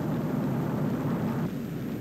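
Steady drone of a propeller-driven bomber's engines in flight.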